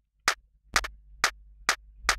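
Short electronic hand-clap drum sample (MDrummer's Techno Clap 2) auditioned five times, about two hits a second. Each hit is clipped very short by a tightened volume envelope.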